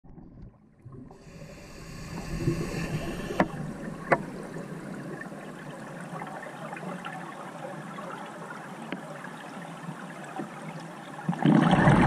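Underwater sound on a scuba dive: a steady crackling hiss, with two sharp clicks about three and a half and four seconds in. Near the end a much louder bubbling rush comes in, typical of a diver's regulator exhaust bubbles.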